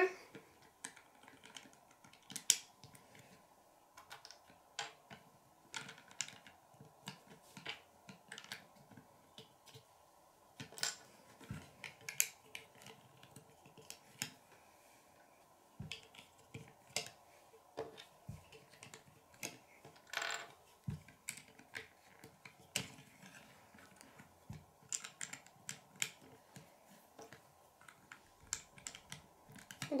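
Small plastic Lego pieces clicking and clattering as they are handled, fitted and pressed together on a wooden table: irregular light clicks throughout, with a few louder snaps.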